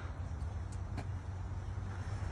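Steady low rumble of outdoor background noise, with two faint clicks about three-quarters of a second and a second in.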